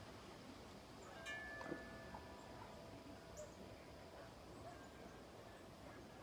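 Faint wind chime struck once about a second in, its several ringing tones fading over the next second or so; otherwise near quiet.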